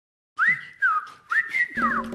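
A whistled melody of quick swoops rising and falling in pitch opens a funk music track. A bass line and drums come in just before the end.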